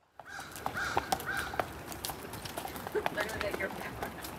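Horse's hooves clopping on a paved road as a horse-drawn carriage approaches, over outdoor ambience. A bird calls three short times near the start.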